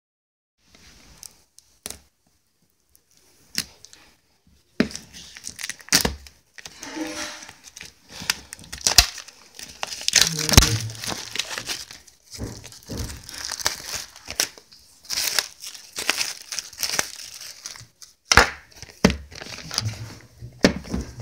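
Packaging of a Blu-ray box set being torn and crumpled by hand: irregular rustling bursts and sharp clicks, sparse at first and busier from about five seconds in.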